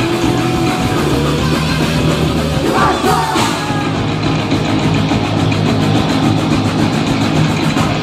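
Live thrash metal band playing loud and dense: distorted electric guitars, bass and drums, with a short vocal line about three seconds in.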